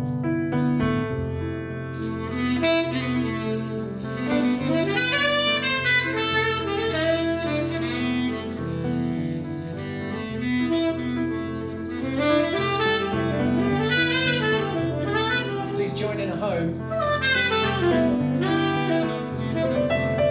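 Tenor saxophone improvising a jazz solo, quick runs rising and falling between held notes, over steady held low chords.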